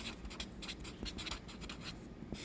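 Felt-tip marker writing a word on paper: a quick run of short scratchy strokes.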